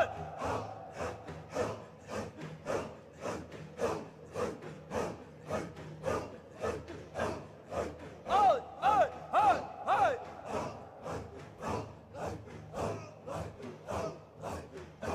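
A circle of men chanting Qadiri zikr in unison, a hard rhythmic breathy chant at about two beats a second. A voice calls out above it in pitches that swoop up and down about eight to ten seconds in.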